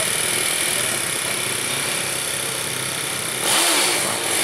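Small single-cylinder four-stroke motorcycle engine of a Honda EX5 100cc drag bike running steadily at the start line, revved louder briefly near the end.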